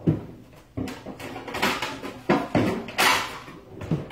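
Kitchen handling sounds: a string of sharp knocks and clatters from dishes, utensils or a cupboard being worked, with a short rush of noise about three seconds in.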